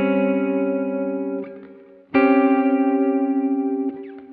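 Electric guitar playing Gsus4(b5) triads (G, C, D♭) in close voicing with the lowest note on the 4th string. One chord rings and is let go about a second and a half in, and the next is struck about two seconds in and held for nearly two seconds. Both chords waver slightly, as if through an effects unit.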